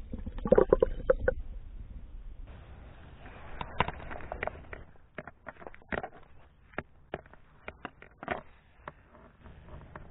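Water gurgling and sloshing around a submerged camera, loudest in a run of pulses in the first second and a half. This is followed by scattered short knocks and clicks of handling.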